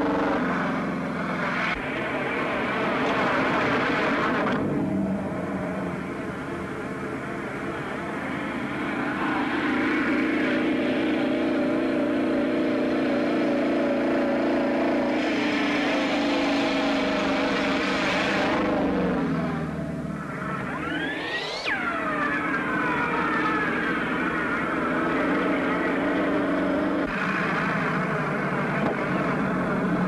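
Engines of a 1930s open touring car and a police motorcycle in a chase, running steadily at speed. About two-thirds of the way through there is one sharp rise and fall in pitch.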